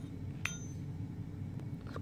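Scissors snipping through yarn once: a single sharp metallic click with a brief ring, about half a second in.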